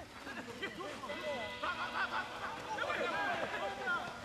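Voices with music in the background.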